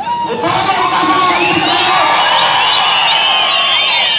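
A large crowd cheering and shouting, many voices whooping at once. The whoops build up about a second in and stay loud.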